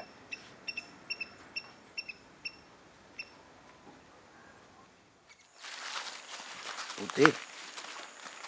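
About nine short, high chirps, roughly three a second, over the first three seconds, then near quiet. Just past halfway a steady outdoor hiss comes in abruptly.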